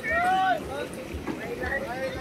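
People's voices talking, with one louder, drawn-out voice in the first half second.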